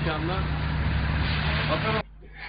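Street sound: a steady low hum under a haze of traffic-like noise, with faint voices. It cuts off abruptly at the end.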